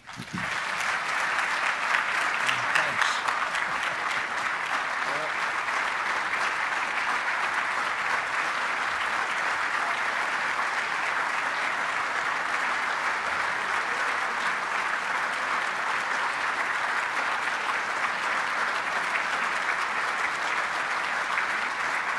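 Large audience applauding: dense, steady clapping that swells up right after a speech ends and holds at an even level.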